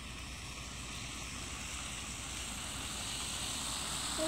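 Steady outdoor background noise: a low rumble with hiss, slowly growing louder.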